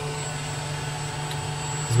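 High-temperature 3D printer with a heated chamber, its fans and heater running with the door open: a steady hum with a thin, high-pitched whine above it.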